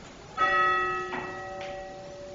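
A bell struck once about half a second in, ringing with several clear steady tones that fade slowly.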